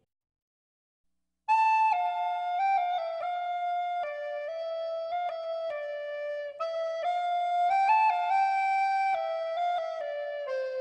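Silence for about a second and a half, then a solo flute playing a slow melody, one note at a time, stepping between held notes.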